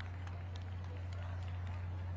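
A steady low hum under a faint murmur of voices, with a few light ticks.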